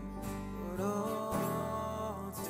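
Live worship band playing a slow song: strummed acoustic guitar over bass and keyboard, with sustained notes and no words.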